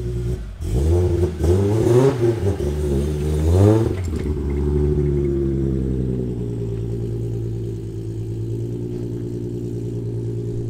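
Mk4 Toyota Supra engine idling, revved three times in quick rising-and-falling blips during the first four seconds, then settling back to a steady idle.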